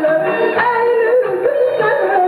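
A woman singing an Azerbaijani song live with a band, her voice sliding and ornamenting the melody.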